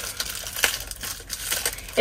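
Plastic wrapping crinkling as it is handled: a run of small, irregular crackles.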